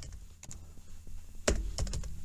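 Typing on a computer keyboard: a run of separate key clicks, the loudest about one and a half seconds in.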